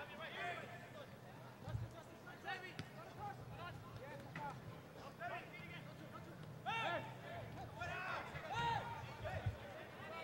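Faint, distant shouts and calls of soccer players and spectators across the field, with a dull thud of the ball being kicked about two seconds in and another thud near the end.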